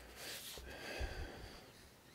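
Faint breathing through the nose close to the microphone.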